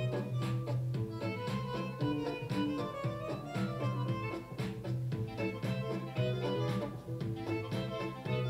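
Music with a steady beat playing from a Divoom Tivoo Max Bluetooth speaker at a moderate volume setting of four bars, heard in the room.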